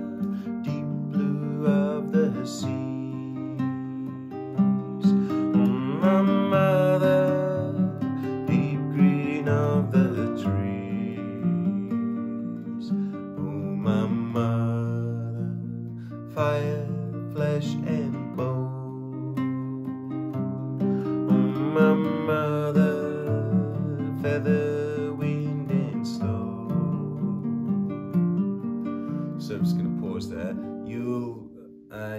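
A man singing a gentle, flowing song while strumming chords on a nylon-string classical guitar.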